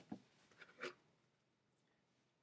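Near silence: a few faint, short scratchy taps in the first second, then dead silence.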